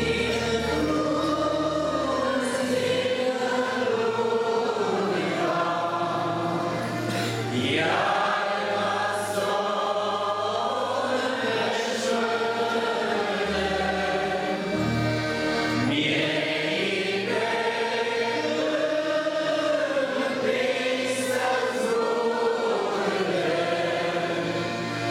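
A women's choir singing a slow hymn in unison, accompanied by an electronic keyboard that holds long, sustained bass notes under the voices.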